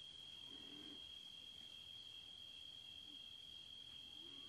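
Near silence: a faint, steady high-pitched trill of crickets, with a few faint short low calls.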